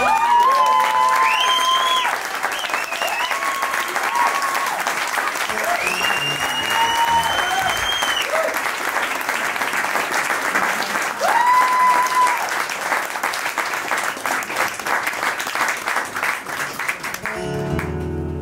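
Audience applauding at the end of a song, with several long, high, steady whoops and whistles rising out of the clapping. The applause dies away near the end.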